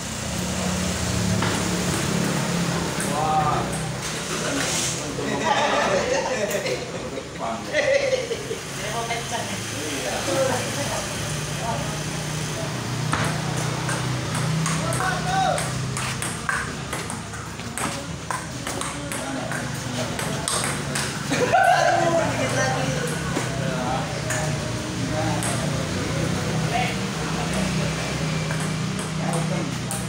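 Table tennis rally: the ball clicking sharply off the rackets and the table in quick back-and-forth strokes, repeated through several points. Voices talk in the background, over a steady low hum.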